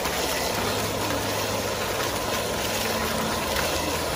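Foaming bubbler fountain jets splashing into a shallow tiled pool: a steady rushing of water.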